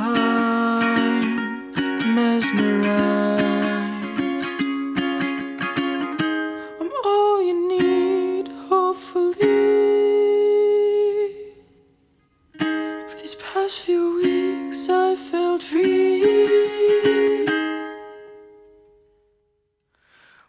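Instrumental break of an acoustic ukulele song: plucked ukulele chords, joined about seven seconds in by a wordless hummed melody. The music stops briefly around twelve seconds, comes back, then fades out near the end.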